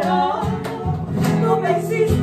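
Two women singing a Peruvian criollo song together, accompanied by a nylon-string classical guitar and a cajón.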